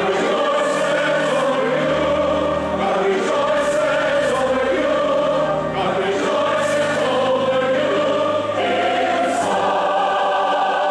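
A congregation singing a hymn together, led by singers on microphones, with held low bass notes sounding beneath the voices at times.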